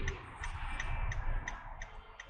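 A car's turn-signal indicator clicking steadily in the cabin, about three clicks a second, over low road rumble.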